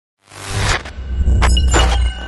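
Intro sound effects: a deep bass rumble under bursts of harsh, shattering static, one about half a second in and two more near the end.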